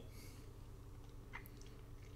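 Near silence between spoken sentences: faint steady low hum of room tone, with one brief faint high squeak just past the middle.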